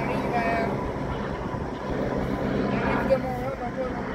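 Helicopter flying past overhead: a steady engine and rotor drone, with voices talking over it about half a second in and again near the end.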